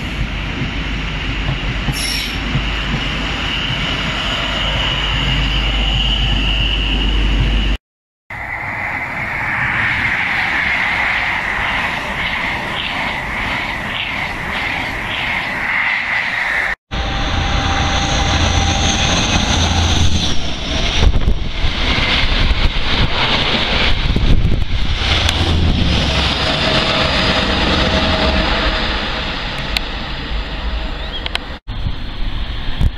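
High Speed Train (Class 43 HST) sets passing, in three cut-together clips. First the rumble of Mk3 coaches with a steady high wheel squeal. After an abrupt cut, a power car runs through fast with a squeal and an even clatter of wheels over the rail, and after another cut comes loud low rumble with uneven bangs.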